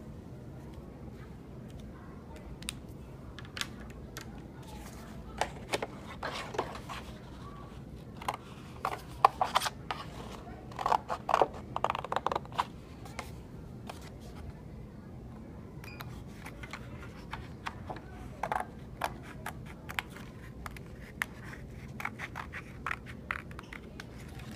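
Paper being handled and cut with scissors: irregular sharp snips and crinkling of a stiff painted sheet over a steady low hum.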